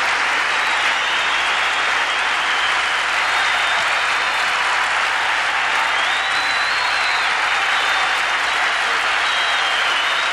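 Large concert-hall audience applauding steadily at the close of a song.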